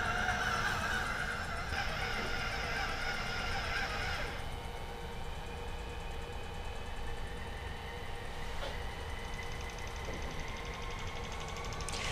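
Magellan TruPRP auto-spin centrifuge running steadily at about 1000 RPM during its whole-blood loading stage: a steady mechanical hum with several whining tones. About four seconds in, some of the higher whining tones cut out.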